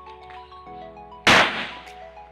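A single pistol shot fired at range targets, a sharp crack a little over a second in that fades out over about half a second. Steady background music plays underneath.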